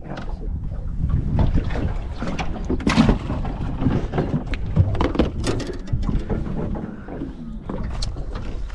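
Irregular knocks, clunks and rustling of fishing gear being handled aboard a boat, over a steady low rumble.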